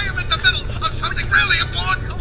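Film soundtrack played from a television: a man's excited voice in short, fairly high-pitched exclamations, over a steady low hum.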